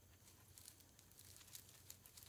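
Near silence, with faint scattered rustles and ticks over a low steady background hum.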